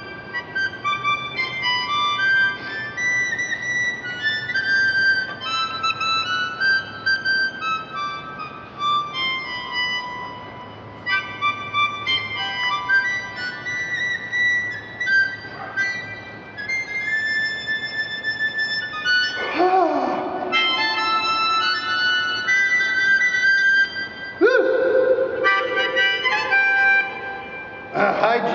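Harmonica playing a blues tune: a string of short reedy notes and chords that move up and down in pitch, with a few lower, longer-held notes near the end.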